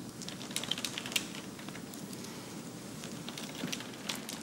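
Computer keyboard being typed on: a quick run of key clicks in the first second or so, then a few faint clicks near the end, over quiet room tone.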